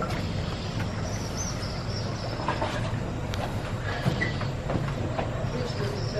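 Footsteps knocking on the wooden planks of a boardwalk, a few scattered knocks, over a steady low rumble.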